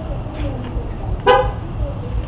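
A vehicle horn gives one short, sharp toot about a second in, over a steady low rumble of vehicle noise.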